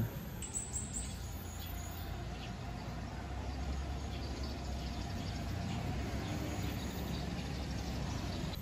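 Outdoor ambience of birds chirping faintly among trees, with short scattered calls, over a low steady rumble.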